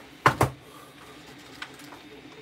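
Art supplies being handled and put away on a craft cutting mat: a short cluster of sharp knocks and clicks about a quarter-second in, then a faint click near the end.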